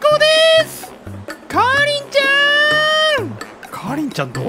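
A cat meowing twice: a short call at the start, then a long drawn-out meow that rises, holds and falls away, over background music with a repeating bass line.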